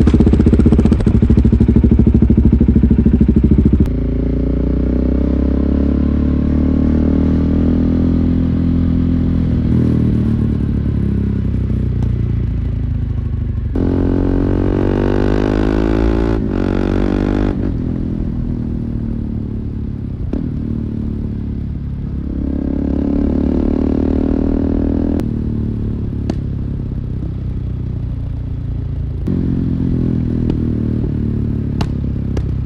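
2017 KTM 690 Duke's single-cylinder engine through a full Akrapovic exhaust with a GPR decat link pipe, running just after starting, loudest for the first four seconds. It then pulls away, its pitch rising in long sweeps as it accelerates, around the middle and again a few seconds later, each ending in a sudden drop.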